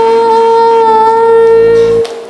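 A singing voice holding one long, steady note over a microphone at the close of a sung line of a Tamil worship song.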